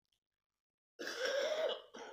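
Silence, then about a second in a man coughs once, a short, sudden cough lasting under a second.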